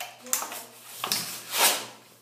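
Packaging of a new mascara being torn and crinkled open by hand: three short rustling bursts, the loudest near the end.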